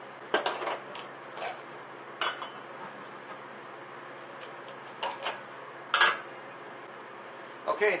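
Empty metal tuna cans knocking and clinking against each other and a plastic bottle as they are handled: a few separate knocks, the loudest about six seconds in.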